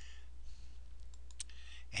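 Computer mouse clicking a few times, the clearest click about one and a half seconds in, over a steady low hum.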